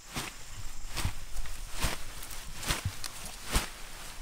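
A dug-up comfrey root clump being thumped against the ground again and again, about one thud a second, knocking the soil off its roots, with rustling of leaves and loose dirt between the thuds.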